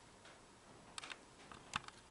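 A few small sharp clicks over faint room tone: a quick cluster of three or four about a second in, then a few more near the end, the last group the loudest.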